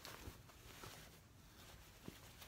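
Near silence, with faint rustling and soft handling sounds of a pieced cotton quilt top being turned over.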